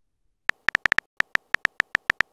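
Texting-app keyboard typing sound effect: about a dozen short clicks in a quick, uneven run, one per keystroke, beginning about half a second in.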